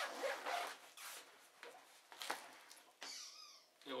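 The zip on a nylon backpack's rear hydration compartment is pulled open in several short strokes, with the fabric rustling as the flap is folded back.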